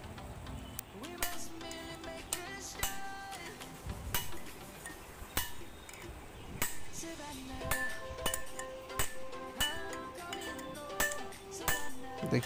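Hammer blows on a chisel driving a new tapered roller bearing down onto a Swaraj 855 tractor's rear axle shaft: irregular sharp metal strikes, each with a short ringing.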